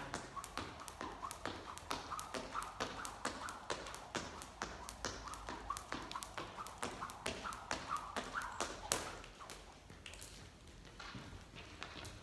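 Skipping rope tapping a hard floor and feet landing, in a steady rhythm of about three taps a second, while the skipper jogs forward and double-jumps back. The tapping stops about nine seconds in.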